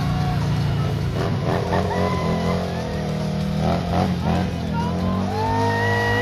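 Harley-Davidson stunt motorcycle engine running hard and revving, its pitch rising and falling, as the bike goes into a burnout.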